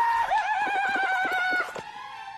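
A warbling, wavering pitched call over a fast run of sharp clicks, stopping shortly before the end.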